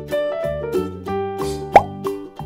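Cheerful children's-style background music with a steady beat of plucked and keyboard notes. Near the end a short plop with a quick rising pitch cuts in, louder than the music.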